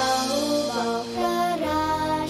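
A young girl singing a slow, held melody in Thai over soft instrumental accompaniment, with a low bass note coming in near the end.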